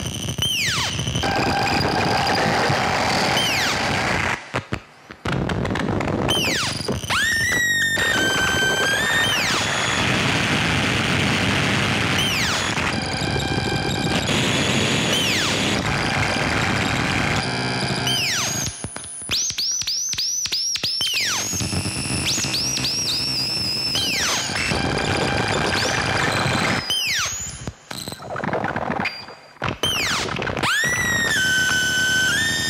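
Ciat-Lonbarde and modular synthesizer rig played by touch on its wooden plates, putting out a dense, harsh electronic noise. Arching, falling whistle-like chirps cut through it, including a quick run of them about two-thirds of the way through. The sound drops out briefly a few times.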